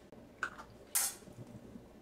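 Faint mouth and breath sounds as lip balm is worked onto the lips: a small lip smack about half a second in, then a short breathy puff a second in.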